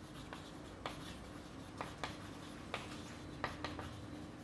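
Chalk writing on a blackboard: about eight short, sharp, irregular taps and scrapes as words are chalked, over a faint steady room hum.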